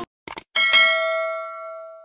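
Subscribe-button sound effect: two quick clicks, then a single notification-bell ding that rings on and fades out over about a second and a half.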